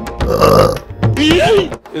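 A man belching loudly, a rough burp about half a second in, followed by a longer drawn-out belch that rises and falls in pitch.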